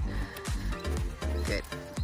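Background dance music with a steady beat.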